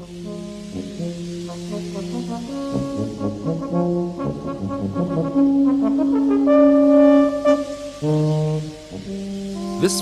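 Background music: brass instruments playing a slow melody of long held notes, swelling loudest about six to seven seconds in.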